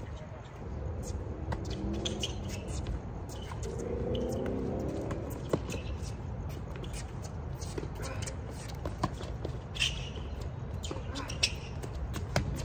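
A doubles tennis rally on a hard court: short sharp pops of racquets striking the ball, spread unevenly, with the scuff of shoes. Faint voices come in briefly around two and four seconds in, over a low steady rumble.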